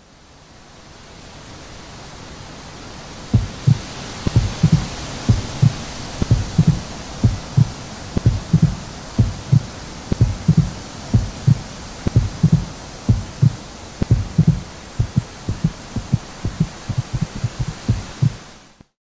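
A steady rushing hiss fades in, and from about three seconds in deep, short low thumps join it, mostly in close pairs about once a second like a heartbeat, coming faster near the end.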